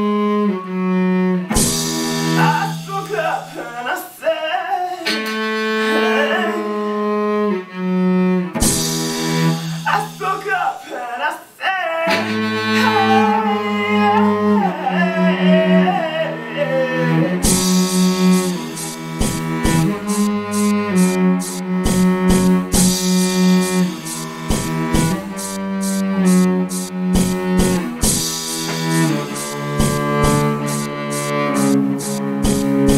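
Layered cellos playing a slow arrangement in long held low notes, with a voice singing gliding high lines over them in places. About halfway through, the cellos change to a steady pattern of short repeated notes.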